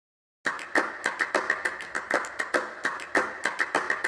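A rapid, uneven series of sharp clicks or taps, about six a second, starting half a second in.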